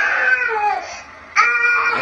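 A baby crying in two wailing cries, picked up by a nanny-cam microphone. The first cry trails down in pitch and stops about a second in, and the second starts about a second and a half in.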